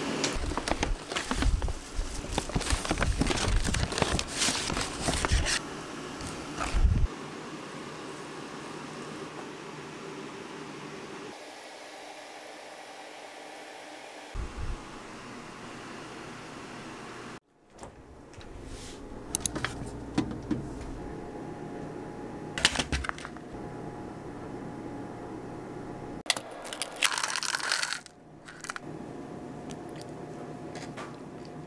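Sample sachets and a mesh zip pouch rustling and crinkling as they are handled, for the first six or seven seconds; after that a steady low room hiss with a few small knocks and clicks.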